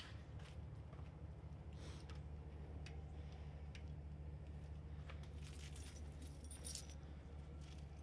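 Keys jingling, loudest a little past the middle, over a faint steady low hum, with light footsteps on a dirt floor.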